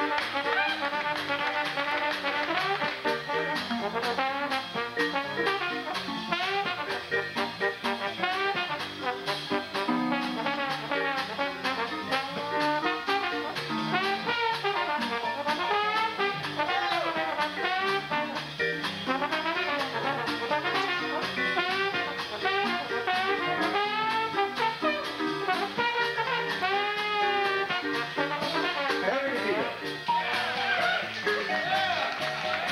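Live Dixieland jazz band, with trumpet, trombone and clarinet playing together over drums, bass guitar and keyboard, in a hot, up-tempo number. A steady drum beat runs under the horns.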